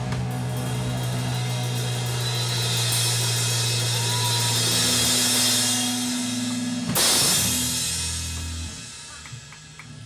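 Live heavy rock band (drum kit, electric guitars and bass) holding a long final chord under a wash of cymbals. One loud hit comes about seven seconds in, then the chord rings out and fades as the song ends.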